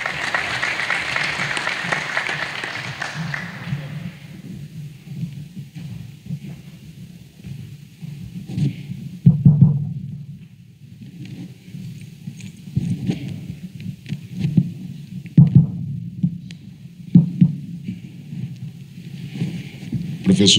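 Audience applauding for about four seconds, then dying away. After that, a low rumble with scattered low thumps and knocks, loudest about nine, fifteen and seventeen seconds in.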